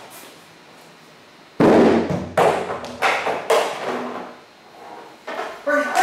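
Large plastic barrel thrown onto the floor: a loud hollow bang about one and a half seconds in, then a run of further knocks as it bounces and rolls.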